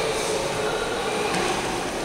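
Steady background hubbub of a large indoor hall full of visitors: a low, even mix of distant crowd murmur and room noise, with no single event standing out.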